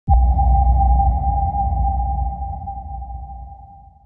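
Electronic intro sting: a sudden deep hit with a single ringing tone held over it, the whole sound slowly fading away.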